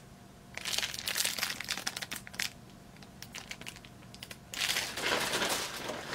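Clear plastic packaging crinkling as it is handled, in two bouts: one starting about half a second in and lasting about two seconds, and a second, denser one starting near the end.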